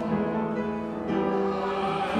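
Congregation and choir singing a hymn with organ, in long held chords that change about a second in and again near the end.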